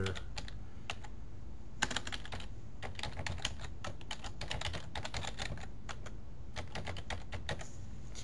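Computer keyboard typing: a run of irregular key clicks that starts about two seconds in and stops shortly before the end.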